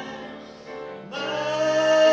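A piano-accompanied vocal duet. A phrase dies away to a soft lull, and about a second in a singer comes in on a long held note over the piano.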